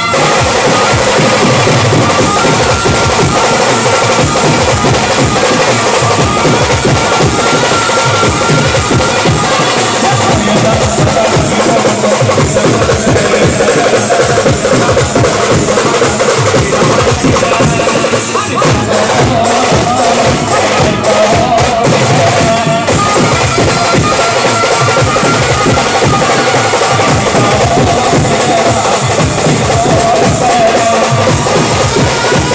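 An Indian street brass band plays loud processional music without a break: dense, driving drumming on large bass drums and snare drums, with a held melody line running over it.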